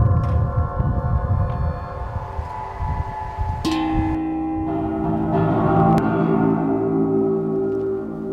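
Metal wind harp strings sounding in the wind: several steady, overlapping ringing tones, with wind rumbling on the microphone in the first few seconds. The chord changes abruptly about three and a half seconds in.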